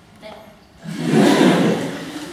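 A sudden loud burst of audience noise, many voices at once, starting about a second in and fading toward the end.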